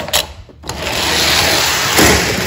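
Hot Wheels die-cast toy cars running along a toy race track as a race starts: a steady rolling, rubbing noise that sets in about half a second in and keeps going.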